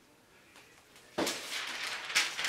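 Near silence, then a sheet of parchment paper rustling and crinkling as it is picked up and handled, starting suddenly a little over a second in.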